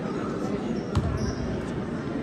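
A basketball bouncing once on a hardwood gym floor about a second in, over a steady background murmur of the crowd in the gym.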